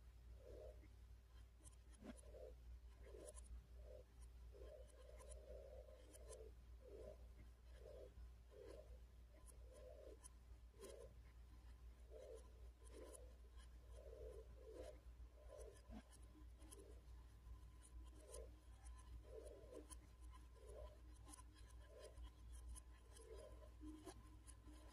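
Electric fan running very quietly: a faint steady low hum with soft, irregular scratchy rubs about once or twice a second.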